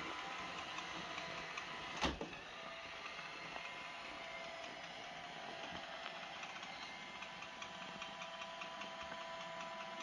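iRobot Roomba S7 robot vacuum driving over carpet: a faint, steady motor whir with a thin whine, and one sharp knock about two seconds in.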